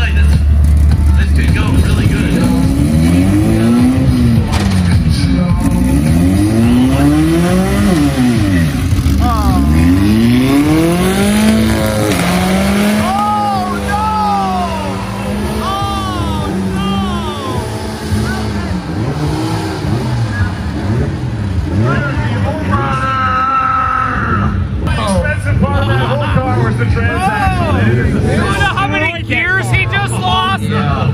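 Open-wheel race car's engine revving hard during a burnout, its pitch swinging up and down again and again every couple of seconds, with a stretch held steadier in the middle.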